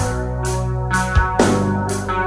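Instrumental intro of a grunge rock song: held chords over a drum kit, with a cymbal crash about every second and low kick-drum hits between.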